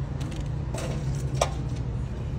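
Steady low background rumble with two faint light clicks, about three-quarters of a second and a second and a half in.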